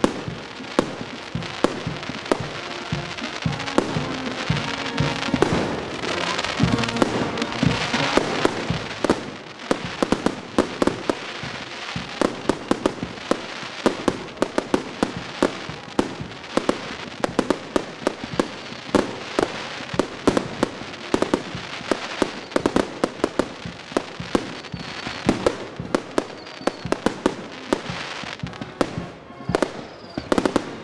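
Aerial fireworks going off in a rapid run of sharp bangs and crackles. Music plays underneath, clearest in the first third.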